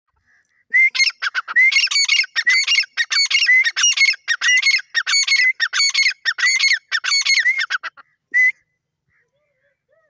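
Grey francolin (teetar) calling: a fast run of loud repeated call notes begins about a second in and lasts about seven seconds. After a short gap there is a single last note.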